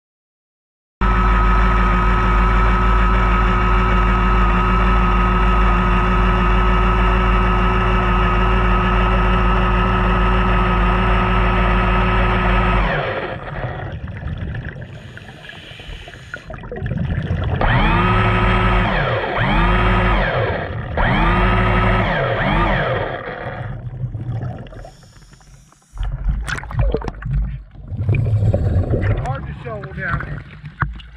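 Underwater recording with a scuba diver: a loud steady droning hum, then several whines that rise and fall in pitch, then choppy splashing water noise as the diver climbs a ladder and breaks the surface.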